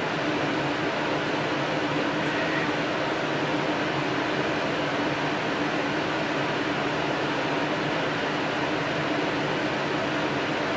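Steady room noise: an even hiss over a low steady hum, with no other sound standing out.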